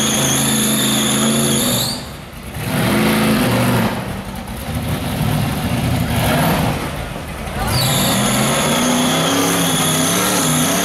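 Rock bouncer buggy's engine revving hard on a hill climb, with a steady high whine that glides up and drops away about two seconds in. A rougher, uneven stretch of engine noise follows, and the whine returns near the end.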